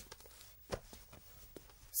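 Quiet room tone with a few faint, short clicks, the sharpest about three-quarters of a second in.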